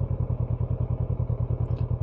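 Motorcycle engine running steadily while riding, a fast, even low pulsing of its firing strokes.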